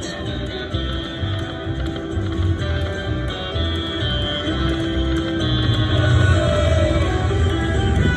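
Buffalo Diamond video slot machine playing its free-games bonus music as the reels spin: a steady pulsing beat under held electronic tones and short melodic notes.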